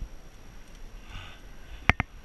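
A cyclist breathing hard on a steep climb, with one heavy breath about a second in. Near the end there are two sharp clicks in quick succession, the loudest thing heard.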